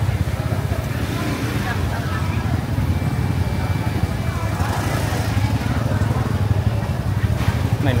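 Motor scooter engines running close by in a steady low rumble, with voices chattering in the background.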